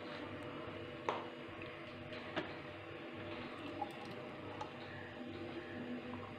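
Thick milkshake pouring from a blender jug into a glass, faint, with a few sharp clicks, the loudest about a second in. A faint steady hum runs underneath.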